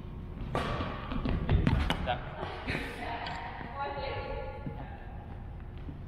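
Badminton doubles rally on a wooden gym floor: sharp racket hits on the shuttlecock and players' footfalls thudding on the court. The heaviest thuds come about a second and a half in, and the activity dies down after the middle.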